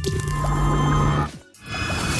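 Logo-animation sound effects: a held synthetic tone with a low hum for a little over a second, breaking off, then a wet, splashy swell near the end as the falling drop bursts into an ink splat.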